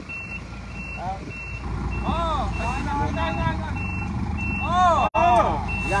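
Concrete mixer truck's reversing alarm beeping steadily, a little under two high beeps a second, over the low running of its engine while concrete is poured down its chute.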